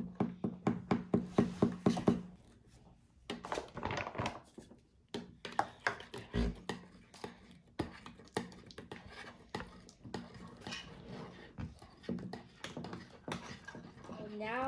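A spoon clicking and scraping against a bowl as slime is stirred: a quick run of about five clicks a second for the first two seconds, then more scattered knocks.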